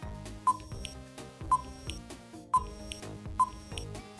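Quiz countdown timer ticking about once a second, each tick short and sharp, over soft background music.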